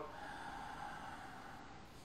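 A person taking a faint, slow, steady breath in during abdominal (belly) breathing.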